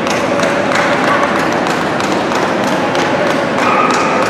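Echoing din of a large gymnasium hall during a dog show, with irregular light taps and thumps throughout and faint voices in the background.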